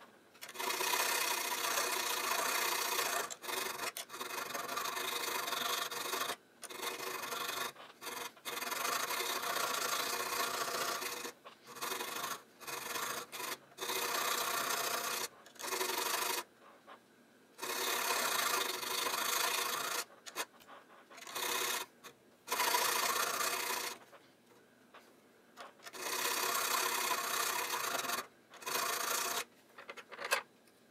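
Thin metal file scraping back and forth across a steel airsoft inner barrel, carving a ring groove into it. It goes in runs of a few seconds, broken by short pauses.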